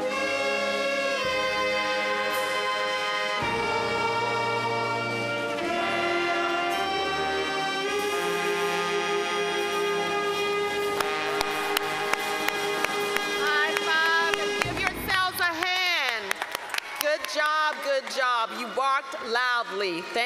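A band and singers performing a slow piece in long held chords that change every couple of seconds, with brass in the mix. The music ends about three quarters of the way through, and a lone voice with wide pitch swings carries on to the end.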